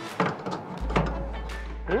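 Background music with a few sharp metallic clicks from wrenches working the brass flare nuts on the outdoor unit's refrigerant service valves. A short questioning "hmm" comes near the end.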